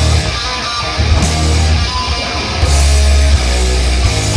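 A heavy metal band playing a song: distorted electric guitar and bass in heavy sustained low notes, with drums and cymbal crashes.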